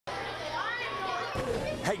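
Lunchtime chatter of many children talking at once in a school cafeteria, a steady hubbub of young voices. A man's voice calls "Hey" at the very end.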